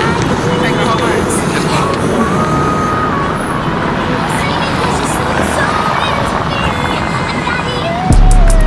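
Steady city street noise: a constant rumble of traffic with indistinct voices talking in the background.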